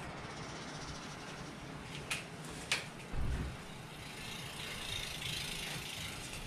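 Jump rope's plastic handles and cord being coiled up by hand, giving two light clicks a little after two seconds in, over a steady background of street noise with a short low thud about three seconds in.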